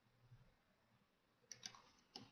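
Near silence, with two or three faint clicks of a computer mouse about one and a half seconds in.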